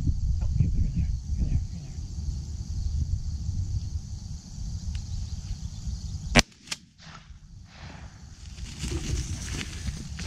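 A shotgun fires once, a sharp report about six and a half seconds in, followed a moment later by a fainter sharp crack. Before the shot, a low rumble of wind on the microphone.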